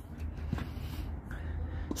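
Quiet outdoor court ambience with a steady low hum and two soft thuds about a second and a half apart, typical of a tennis ball being bounced on a hard court before a serve.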